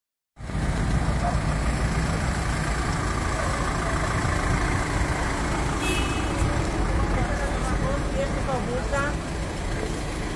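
An ambulance's engine idling close by, a steady low rumble with street traffic noise, and people talking from about seven seconds in.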